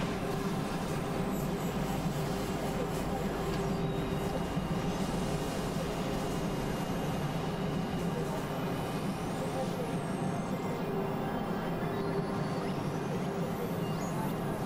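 Experimental synthesizer drone and noise music: a dense, steady rumbling texture with sustained low tones and faint high pitches sliding up and down.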